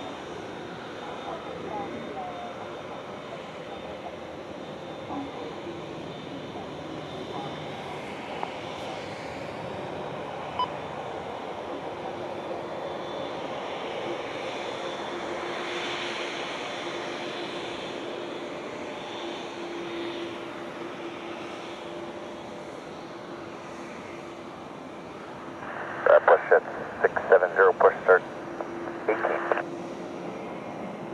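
Boeing 787 Dreamliner's GEnx turbofan engines idling as the airliner taxis slowly, a steady jet hum with a faint whine. Near the end a cluster of loud, short bursts cuts in.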